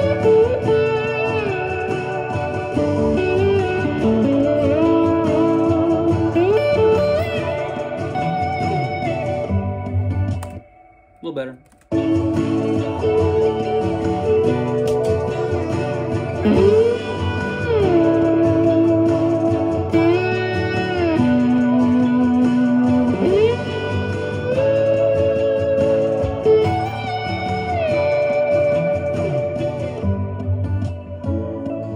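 Electric slide guitar on a vintage Gibson ES-335, gliding into and between long sustained notes in a melodic lead, over steady held chords from a backing track. About ten seconds in the sound drops out for about a second and a half, with a single slid note in the gap.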